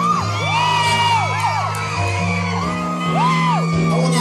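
Live R&B concert music: sustained low chords that change every second or two, with high wordless whoops rising, holding and falling over them.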